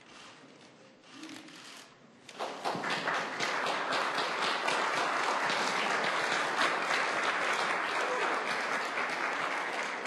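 An audience applauding, the clapping breaking out about two and a half seconds in and holding steady and dense.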